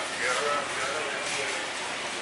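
Store background: faint, indistinct voices of other people over steady ambient noise, strongest in the first second.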